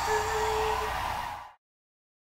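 Live concert audio from an audience recording: a female singer holding one steady note over the hall and crowd noise, which fades out to complete silence about one and a half seconds in.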